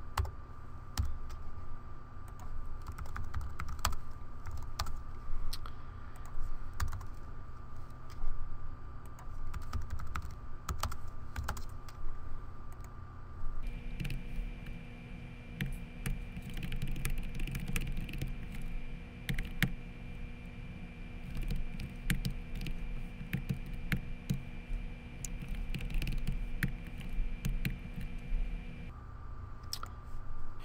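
Typing on a computer keyboard: irregular runs of keystrokes with short pauses between them.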